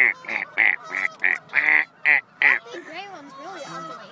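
A flock of geese honking: a quick run of loud honks, about three a second, that stops about two and a half seconds in, followed by softer, lower wavering calls.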